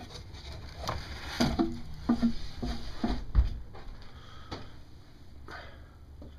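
Scattered light knocks and clicks with a few low thumps, the loudest just past the middle: footsteps and handling noise in a small wooden room.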